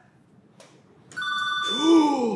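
An electronic chime sound effect: several steady high bell-like tones held together, coming in just past halfway after near silence, marking the answer as safe. A man's short surprised exclamation overlaps it near the end.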